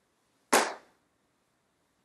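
A single sharp crack about half a second in, dying away within half a second.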